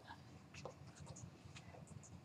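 Near silence: room tone with a few faint, light clicks scattered through it.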